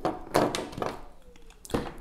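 Light knocks of fingers and a power plug at the socket on the back of a leatherette-covered watch winder box: one about half a second in, another just before the end.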